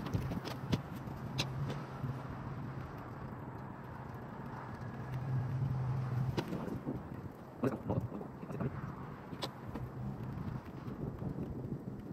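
A steady low engine hum, like a vehicle idling, under scattered small clicks and knocks of a screwdriver and hand tools on metal.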